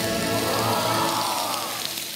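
Meat sizzling on a hot grill, a steady crackling hiss, with background music and a musical tone that rises and then falls through the middle.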